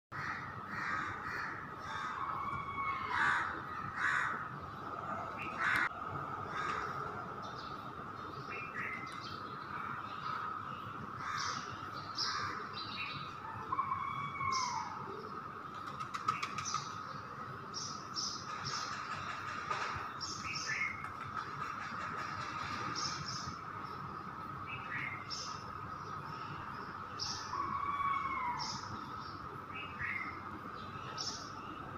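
Birds chirping and calling: short high chirps scattered throughout and, now and then, a curved falling call, over a steady high thin tone.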